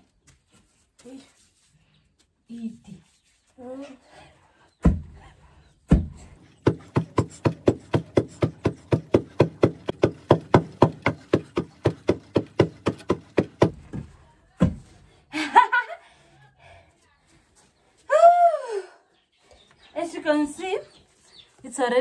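Two long wooden pestles pounding okangaya, the grain added to oshikundu, in a hole in the ground. Two single thuds come first, then the pestles strike in turn at about four strokes a second for roughly seven seconds, with one last thud before voices take over.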